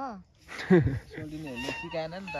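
A green leaf held against the lips and blown as a leaf whistle, sounding squeaky pitched notes: a loud falling squeal about half a second in, then short wavering notes.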